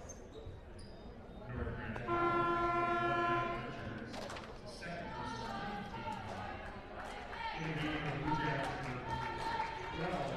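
Gym scoreboard horn sounding once, a steady buzz lasting about a second and a half, about two seconds in. Basketball bounces and voices echo around it in the gym.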